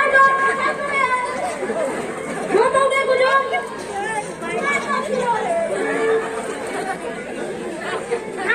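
Speech: the actors trading spoken lines over the stage microphones, with crowd chatter behind.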